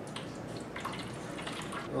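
Descaling solution poured from a plastic bucket into an ice machine's water reservoir: a steady trickle and splash of liquid.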